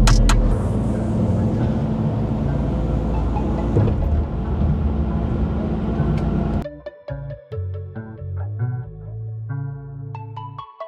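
Kubota compact track loader's diesel engine running, heard close from the loader's bucket. About six and a half seconds in it cuts off abruptly to background music with short picked notes.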